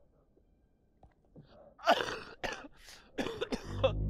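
After a near-silent first second, a young man coughs hard several times in quick succession, harsh, spluttering coughs. In the film's scene he is coughing out his teeth.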